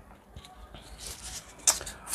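Faint rustling of thin lavash flatbread handled and rolled around a cucumber slice, with one short crisp crackle near the end.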